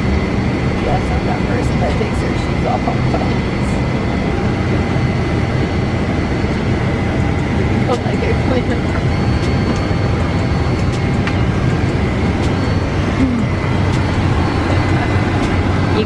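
Steady drone of an airliner cabin: a constant hum with a faint high whine over an even rushing noise, heard from inside the cabin.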